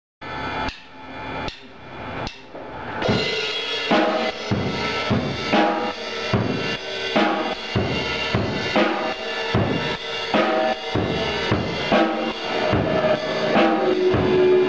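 Drum kit opening a live rock song: a few separate hits in the first three seconds, then a steady beat on bass drum, snare and cymbals, with other instruments coming in under it.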